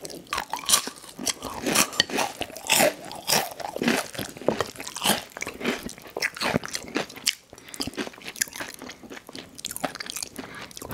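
Close-miked chewing of spicy noodles and Hot Cheetos, with irregular wet crunches and mouth clicks.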